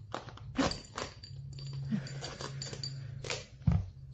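A large kitchen knife forced through a raw spaghetti squash's tough rind until it splits in half, with several sharp knocks of the blade and squash on a plastic cutting board, the loudest two near the end.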